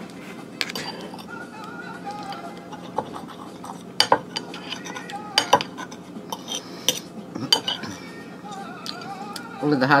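A metal fork clinking and scraping against a china plate while cutting and picking up food, a string of separate sharp clicks, the loudest about four and five and a half seconds in.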